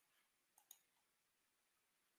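Near silence broken by two faint mouse-button clicks in quick succession about half a second in.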